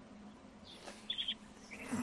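A quiet pause in the talk with a faint noise floor, broken by a few brief, faint high chirps about a second in.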